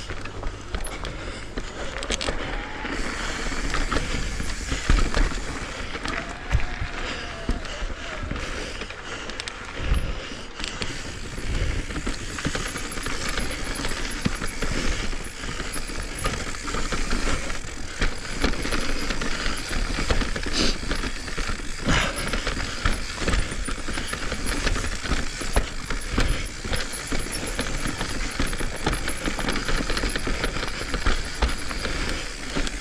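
Commencal full-suspension mountain bike rolling fast downhill over dirt, roots and rock: steady tyre noise and rattling from the bike, with sharp knocks now and then as it hits roots and stones.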